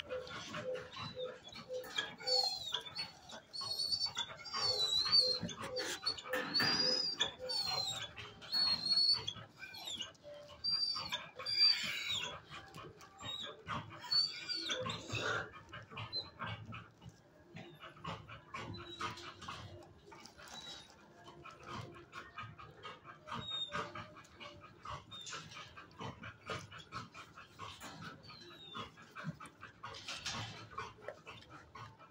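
Dogs barking and whining in a shelter kennel, with high, wavering whines among sharp barks; busiest in the first half and lighter after about fifteen seconds.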